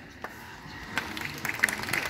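A crowd of students clapping, starting about a second in and growing denser.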